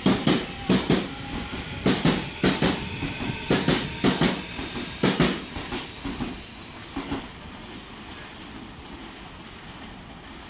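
Meitetsu 9500 series electric train departing, its wheels knocking over rail joints in quick pairs about once a second over a running rumble. The knocks die away about seven seconds in as the last car clears.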